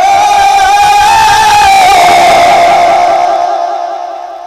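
A man's voice holding one long, high, loud note of a naat through a public-address system, the pitch rising a little and then slowly sinking. About three and a half seconds in, the voice stops and the hall's echo dies away.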